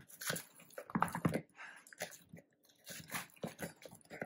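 Crispy fried chicken pieces being tossed in a sticky sweet soy garlic sauce with a plastic spoon in a bowl: irregular crunchy, wet squelches and scrapes, several a second.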